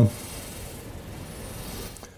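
Steady background hiss of room noise between words, cutting off sharply at the end.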